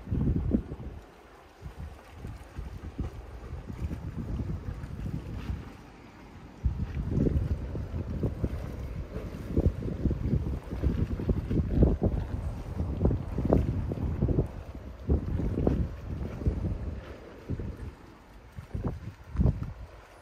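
Wind buffeting the microphone: a low rumble that surges in gusts and eases off several times.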